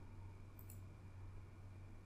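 Near silence with a low steady hum, and one faint computer-mouse click a little over half a second in.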